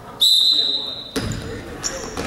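A referee's whistle is blown once, a single steady high blast lasting about a second. Right after it comes the general noise of play and voices in the gym.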